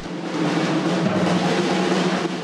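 A drum kit played in a fast, continuous drum roll, even and unbroken at a steady level.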